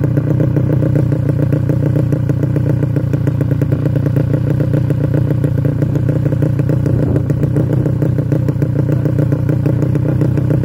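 A modified underbone (bebek) motorcycle engine with a Gordon's racing exhaust idles steadily and loudly, with a quick, even exhaust beat and no revving.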